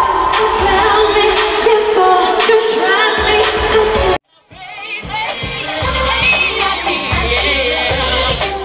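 Female vocal group singing pop live over a backing track, recorded from the audience, with vocal runs gliding up and down in pitch. Just after four seconds the sound cuts out briefly and picks up in a different, duller-sounding live recording with a thudding beat.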